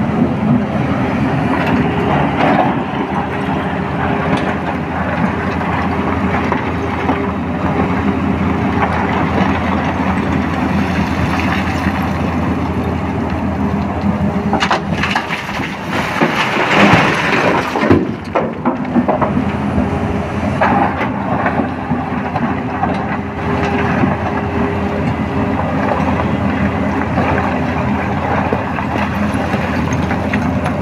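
Tata Hitachi 210 excavator's diesel engine running steadily under hydraulic load. About halfway through, a bucketful of broken rock pours into the dump truck's body in a loud clattering rush lasting a few seconds.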